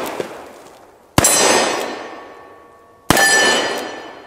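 Two shots from a Colt Single Action Army revolver in .45 Colt, about two seconds apart. Each is followed by a long fading echo and a ringing metallic tone, most clearly after the second shot, the sound of a steel target being struck.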